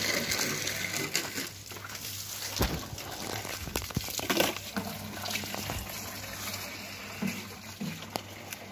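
Water running steadily from a pipe fed by a small pump that is weak, so the flow is slow. A low steady hum runs underneath, with a few short thumps.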